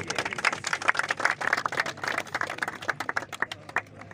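A crowd clapping in applause, a fast irregular patter of hand claps that dies away toward the end.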